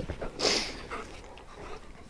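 Large dogs playing rough with a person, with a short huff about half a second in, then quieter sounds of their play.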